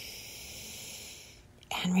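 A woman taking one long, deep breath in through her nose: a steady airy hiss that fades out about a second and a half in.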